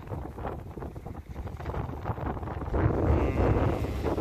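Wind buffeting the microphone over shallow sea water washing at the shoreline, with a rough, gusty rumble that grows louder in the second half.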